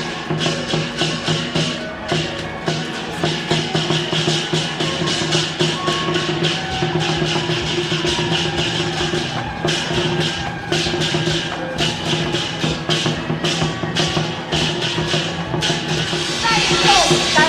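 Lion dance percussion: drum and cymbals beating a fast, driving rhythm, the cymbals clashing several times a second over a steady low ringing.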